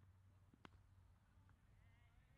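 Cricket bat striking the ball once: a single sharp, faint knock with a short ring about two-thirds of a second in, against near silence.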